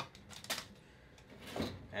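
Packaging and paper being dropped and handled inside a cardboard shipping box, with one sharp tap about half a second in and soft rustling after.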